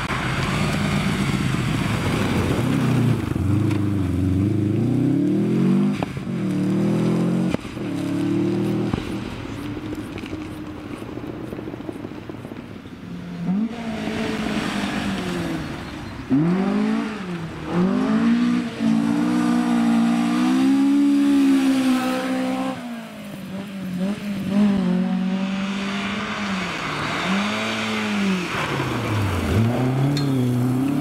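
Rally car engines driven hard on a gravel stage. First a Subaru Impreza rally car, its revs climbing and dropping through gear changes, with a couple of sharp cracks about six and seven seconds in. Then more cars revving hard up and down through the gears, ending with a historic Ford Escort Mk1 rally car sliding through a gravel hairpin.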